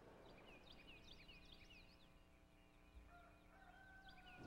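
Near silence with faint, high chirps of small birds, a quick flurry in the first two seconds, over a faint steady hum.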